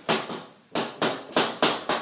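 A quick, uneven run of six sharp knocks in two seconds. Each rings out briefly before the next.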